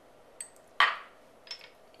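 Small glass prep dish clinking and knocking: one sharp, loud knock a little under a second in, with fainter clicks before and after.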